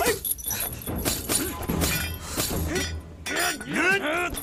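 Fight-scene sound: metal chain weapons clinking and swishing, with a string of short yelping cries and grunts, the loudest cry near the end.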